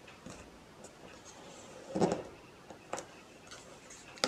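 Card stock being handled on a craft mat: hands pressing layered paper panels down, with soft rustles and small ticks, a dull knock about two seconds in and a sharp click about a second later.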